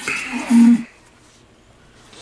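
A man's short vocal noise, a held low hum lasting about a quarter second, about half a second in, then quiet room sound.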